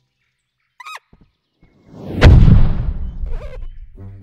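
Cartoon sound effects: a brief high squeak, then a swelling rush into one heavy impact with a deep boom that slowly dies away, followed by a faint squeak.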